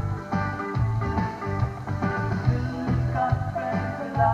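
Rock band playing an instrumental passage: bass guitar carrying the low line, with drum hits on a steady beat and electric guitar and keyboards above, no vocals.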